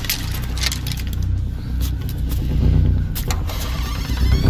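Staged fight sound effects: a handful of sharp hits and impacts over a low, steady rumbling score.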